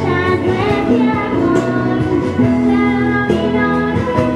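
A young girl singing a Spanish-language pop song into a handheld microphone over instrumental accompaniment, holding one long note in the second half.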